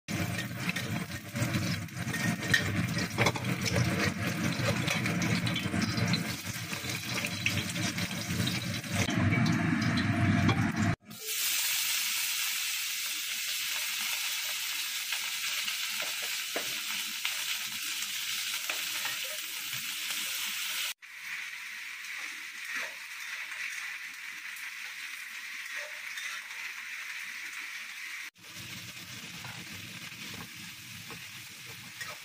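Food frying in a hot wok: an egg sizzling in oil under a metal spatula, then yardlong beans stir-frying with a bright steady hiss. The sound breaks off and changes abruptly three times, about 11, 21 and 28 seconds in.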